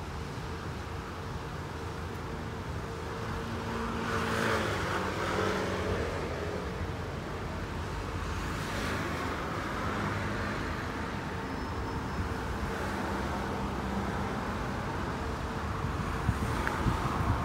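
Road traffic in a slow queue: car engines and a double-decker bus's engine running at crawling speed. The hum is steady, with louder swells from passing vehicles about four seconds in and again near nine seconds.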